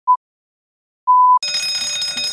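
Countdown beeps: a short beep at the start and a longer one about a second in, as on a film leader. Just after the second beep, an electric gong bell starts ringing loudly.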